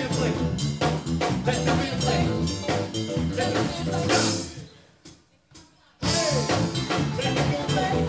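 Live band of drum kit, bass guitar, electric guitar and keyboard playing a groove. It stops dead about four seconds in, leaves a second or so of near silence, then crashes back in together around six seconds.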